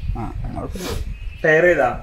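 People's voices: soft talk, then a louder drawn-out voiced sound about one and a half seconds in.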